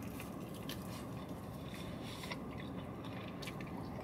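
A man biting into and chewing a tortilla wrap of fried Cajun fish strips with his mouth closed: faint, scattered small mouth clicks and squishes over a steady low hum inside a car.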